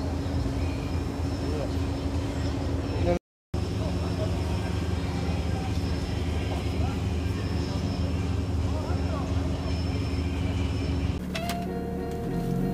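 Car engine idling steadily at an outdoor car meet, with faint voices behind it. The sound drops out briefly about three seconds in, and shortly before the end it gives way to a different, quieter steady hum.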